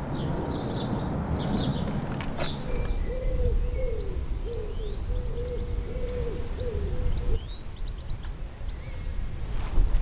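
A pigeon cooing: a run of soft, evenly repeated low coos that starts about three seconds in and lasts about four seconds. Faint small-bird chirps and a low rumble sit behind it.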